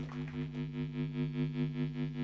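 A held synthesizer or keyboard chord over a steady low note, pulsing evenly in a tremolo about four times a second.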